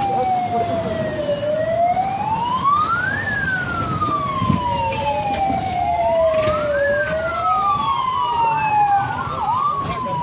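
Vehicle sirens wailing in slow rising and falling sweeps, two of them overlapping out of step, as an official convoy approaches.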